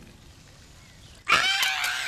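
A peacock gives a sudden, loud call about a second in, held and then falling in pitch, after a quiet start.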